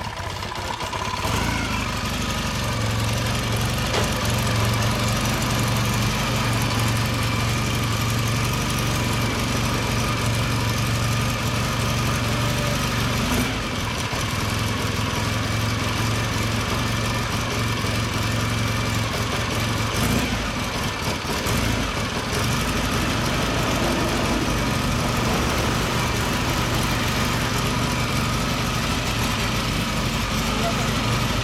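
1970 Kawasaki 650-W1SA's vertical-twin engine idling steadily through its stock mufflers.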